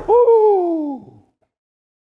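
A man's long, high-pitched hooting "oooo", held for about a second and falling in pitch as it fades out.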